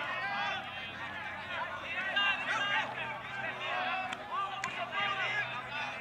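Several voices calling out and talking over one another, none in clear words, with a faint low hum underneath.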